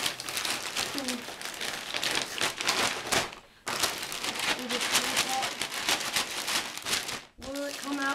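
Plastic poly mailer bag crinkling and rustling as it is handled and pulled open, with a short break about three seconds in. A voice starts near the end.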